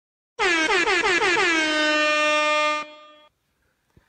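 Air horn sound effect: a rapid run of short blasts, each dipping in pitch, then one long held blast that cuts off suddenly, with a short fading tail.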